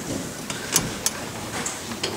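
Rustling and shifting of an audience in a darkened theatre auditorium, with two sharp clicks about three-quarters of a second and a second in.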